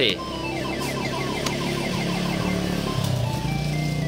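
Coin-operated fruit slot machine (tragamonedas) playing a spin: a rapid run of electronic beeps as the light chases around the ring of fruit symbols. The beeps thin out near the end as it stops on a symbol that wins nothing.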